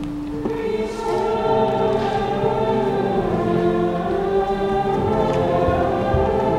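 A choir singing in church, several voices holding long notes that shift slowly in pitch; the singing grows louder about a second in.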